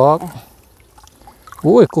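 Faint trickling and dripping of water from a wet fine-mesh shrimp net as hands sort through the catch, with a few small clicks. Short bursts of a person's voice come at the start and near the end.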